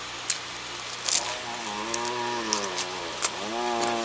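Closed-mouth humming, a long "mm" held in two stretches from about halfway in, gently rising and falling in pitch, while chewing bread. A few sharp mouth clicks come before it.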